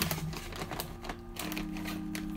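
Crinkly plastic snack bag rustling and crackling as it is handled and lifted out of a cardboard box, a quick irregular run of small crackles.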